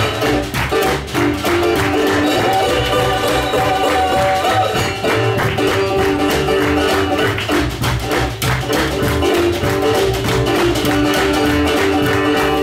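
Live acoustic blues band playing: a small box-bodied guitar over upright double bass and hand drums, with a steady beat.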